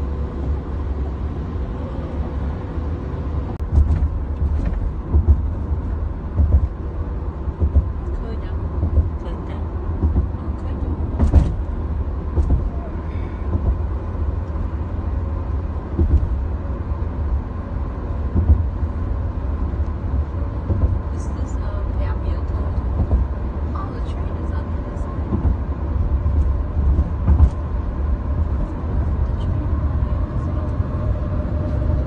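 Steady low road and engine rumble inside a moving Honda sedan's cabin at highway speed, with a few scattered small clicks and knocks.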